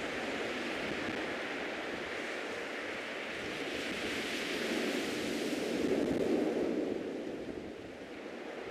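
Outdoor ambient noise: an even rushing hiss that swells about five to six seconds in and drops away near the end.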